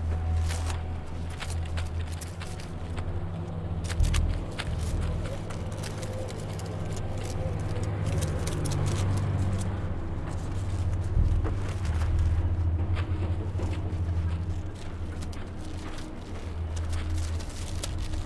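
A low, steady rumble with scattered faint clicks and rustles, and a soft thump about four seconds in and another near eleven seconds.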